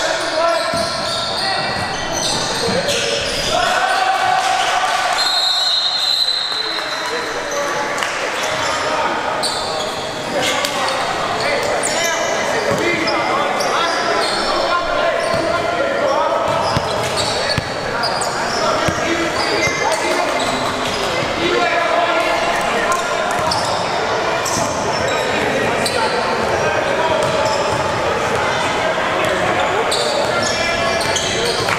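Basketball game in a large gymnasium: a ball bouncing on the hardwood court among scattered knocks and shoe noise, under constant overlapping chatter from players and spectators echoing through the hall.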